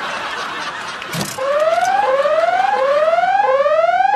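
A rushing hiss, then from about a second and a half in a whooping alarm siren: a tone that rises over about two-thirds of a second and repeats about four times.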